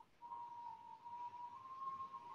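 A faint, steady, pure whistle-like tone held for about two and a half seconds, stepping slightly higher in pitch partway through.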